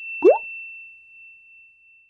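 Logo sting sound effects: a short rising 'bloop' pop about a quarter second in, over a single high bell-like tone that rings on and slowly fades away.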